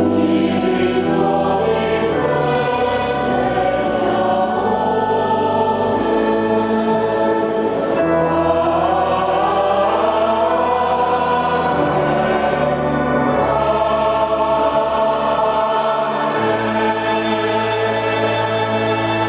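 Mixed choir of men's and women's voices singing a sacred piece with organ accompaniment. The organ holds long sustained chords beneath the voices.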